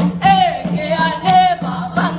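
A group of voices singing a Kisii (Gusii) traditional harvest folk song, with a sustained low note beneath the melody.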